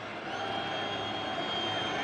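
Steady stadium background noise during a football broadcast, with a thin high whine held for over a second.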